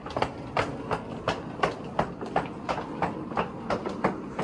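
High heels clicking on a tiled floor at a brisk walking pace, about three sharp clicks a second, over the steady rolling rumble of a wheeled suitcase's small wheels on the tiles.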